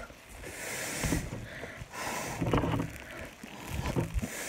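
A person blowing hard through a towel soaked in makeup remover, twice, each breath about a second long, frothing the wet cloth into foam.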